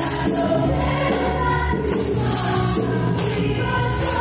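Yamaha stage keyboard playing a worship song in slow, held chords, with a choir-like sound over it.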